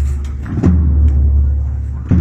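Slow, measured beats on a large low-pitched drum, about one every second and a half. The ringing of one stroke fades out, a new stroke lands a little past half a second in, and it rings on low as it fades again.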